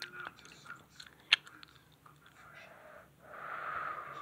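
Faint clicks and taps of plastic Lego bricks being handled, with one sharper click about a third of the way in, then a soft breath close to the microphone near the end.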